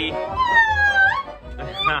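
A toddler's whiny cry: one long wail that falls in pitch and turns up at the end, over band music, with a short laugh near the end.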